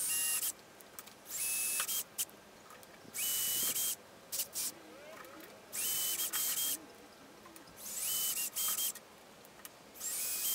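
Ozito brushless cordless drill run in five short bursts of under a second each, about every two seconds, the motor whine climbing as it spins up each time: small pilot holes being drilled one after another through a guide jig into the table top.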